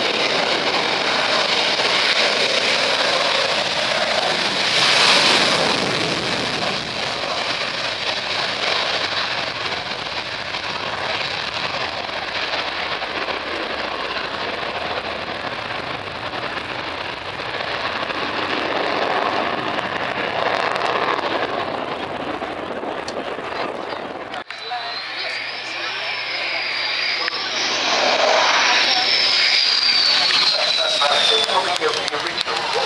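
Twin-engine jet fighter's engines running at takeoff power as it rolls down the runway and climbs away, loudest about five seconds in. Near the end, after a sudden change in the sound, a high engine whine glides up and down and then falls away.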